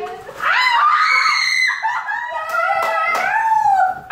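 Several people screaming and squealing in excited surprise, high drawn-out cries overlapping one another, starting about half a second in.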